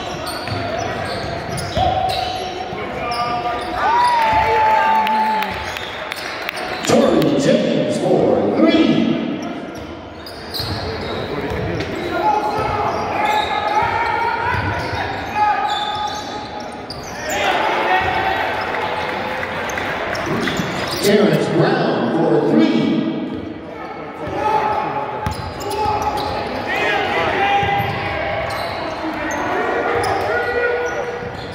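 Basketball being dribbled and bounced on a hardwood gym floor, with high squeaks from sneakers and indistinct shouting from players and the bench, all echoing in the large gym.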